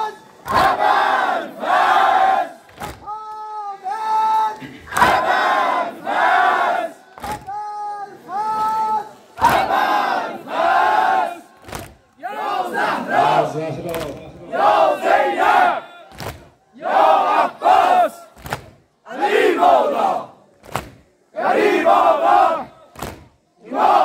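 A large crowd of male Muharram mourners chanting in unison: loud, short shouted phrases in a steady rhythm. In the first half a single lead voice sings short held notes between the crowd's responses, in call and response; after that only the crowd's chants go on, about one every second and a half.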